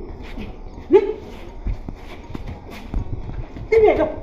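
A woman's short shouted cries as she struggles against being dragged, one about a second in and another near the end, with scuffling footsteps on paving between them.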